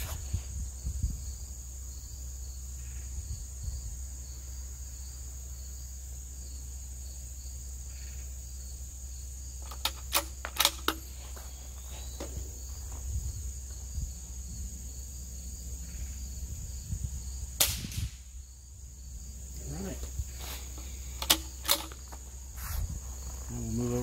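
Vudoo V22 .22LR bolt-action rifle with a Liberty Renegade suppressor, fired and worked between shots: short groups of sharp cracks and metallic clicks come after about ten seconds, near eighteen seconds and again a few seconds before the end. Insects trill steadily in the background throughout.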